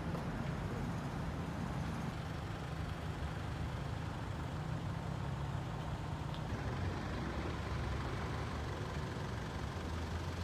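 Steady low rumble of vehicle engines and traffic.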